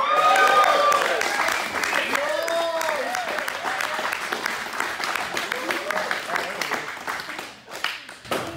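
Small group applauding and cheering, with whoops and shouts loudest in the first three seconds; the clapping dies away near the end.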